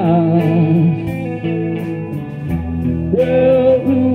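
Live band playing a song: electric guitar with bent, sliding notes over bass and drums, with regular cymbal hits.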